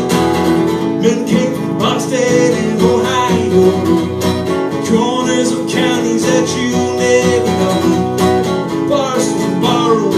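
Acoustic guitar strummed in a live folk-blues song, with a melody line over it whose pitch bends and wavers.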